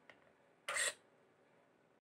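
A short buzzy rasp, about a quarter second long and a little under a second in, from the hobby servo that works the soap bottle's pump in a homemade hand-wash dispenser.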